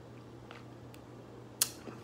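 Quiet sips from a glass of beer as it is drunk and lowered, with a couple of faint clicks and one sharp click about one and a half seconds in, over a steady low hum in the room.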